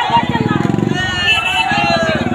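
Raised voices of a protest crowd in the street, shouting, over a loud low pulsing drone.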